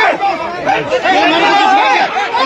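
Several men talking over one another in a crowd, speech only.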